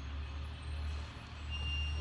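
School bus engine running nearby, a steady low rumble, with a brief high thin tone near the end.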